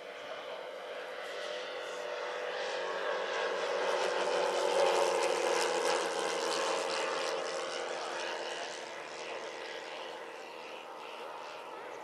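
Engines and propellers of a large radio-controlled DC-6B four-engine scale model airliner in flight: a steady multi-engine drone that grows louder as the model passes overhead around five seconds in, then fades as it flies away.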